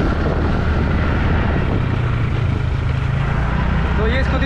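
Motor scooter running along at speed, its engine's hum rising slightly about halfway through, under a steady rush of wind buffeting the phone microphone.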